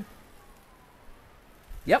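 Quiet outdoor background with a low wind rumble on the microphone; a man says "yep" near the end.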